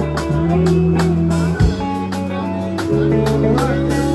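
A live band playing: guitar over held bass notes, with a drum kit keeping a steady beat.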